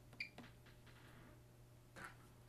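A short electronic beep from a 2100Q handheld meter as its button is pressed, followed by a faint click, over a steady low room hum. Another faint click comes at the end.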